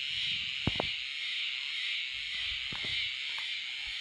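A steady, high-pitched chorus of small field creatures calling without pause, with two light clicks a little under a second in as a chili plant is handled.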